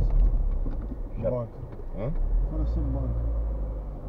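Low, steady engine and road rumble heard from inside a car cabin as the car drives slowly along a street.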